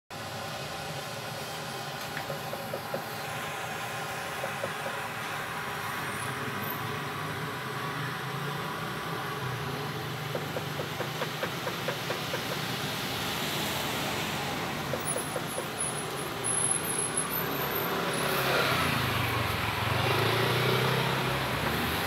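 Road traffic: cars passing on a street, getting louder over the last few seconds as a vehicle comes by.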